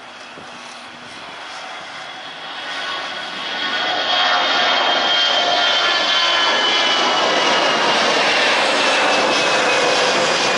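Citilink Airbus A320-family twin-jet airliner climbing out just after takeoff, its turbofan engines at takeoff power. The engine roar grows louder over the first four seconds as the jet nears, then holds loud, with a high whine that slowly falls in pitch.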